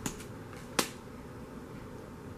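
Two sharp clicks as an oracle card deck is handled, one at the start and a louder one just under a second in.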